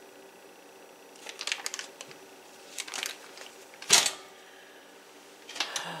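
A butter stick's paper wrapper crinkling in short spells as pats of butter are broken off and dotted over a dessert in a glass baking dish, with one sharp knock about four seconds in.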